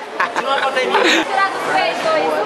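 Several young people's voices talking over one another in casual chatter.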